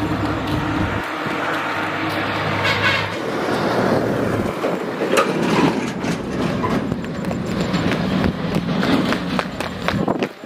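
A motor vehicle passing on the road, its low engine drone dropping away about three seconds in, over steady outdoor noise; then scattered scuffing footsteps on concrete steps.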